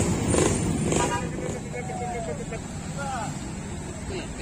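Road traffic of cars and motorcycles moving slowly through a steep hairpin bend, a steady low engine rumble, with people's voices and a few calls over it.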